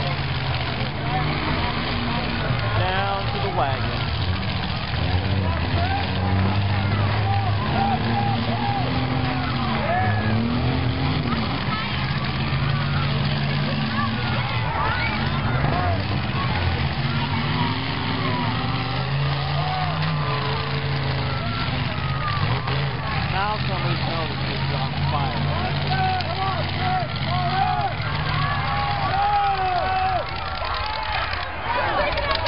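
Demolition derby cars' engines running and revving as they maneuver around a dirt arena, their pitch rising and falling.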